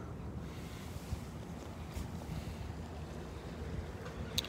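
Wind buffeting the microphone outdoors, a low steady rumble, with a couple of faint ticks about one and two seconds in.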